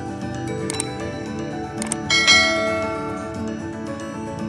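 Soft background music, with the sound effects of an on-screen subscribe button over it: two mouse clicks about a second apart, then a louder click and a bell-like notification ding a little past halfway that rings out for about a second.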